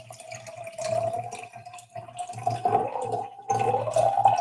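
Liquid being poured into a cup of water, a steady pour with a single tone that rises slowly.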